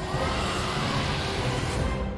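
Cartoon soundtrack: a loud rushing, rumbling sound effect with music underneath.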